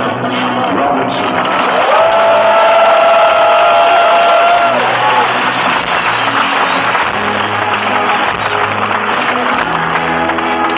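Live band music with a concert audience applauding and cheering over it; a long held high note stands out above the crowd noise from about two to five seconds in.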